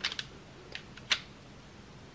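A few light plastic clicks as .68 calibre projectiles are pressed into a Byrna magazine, the sharpest just after a second in.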